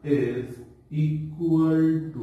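A man's voice speaking slowly in drawn-out syllables, the last one held steady for about half a second near the end.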